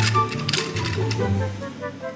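Background music with a bass line and melody, with a few sharp clicks in the first half.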